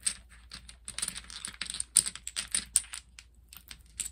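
Double-six dominoes clicking and clattering against each other as they are shuffled in the hands: a quick, dense run of sharp clicks that thins out near the end.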